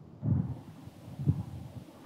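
Faint low rumbling of wind buffeting a microphone, in two short gusts, over a soft hiss.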